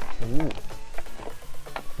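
Hockey stick blade tapping a Comet off-ice puck, which rides on small metal nibs, back and forth across asphalt: several light knocks as the puck glides between touches.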